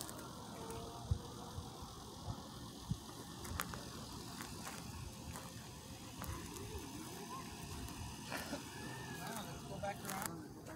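Footsteps on dry dirt and grass, with the bumps and rubbing of a hand-held phone, and a few louder thuds in the first three seconds. Faint voices murmur in the background in the second half.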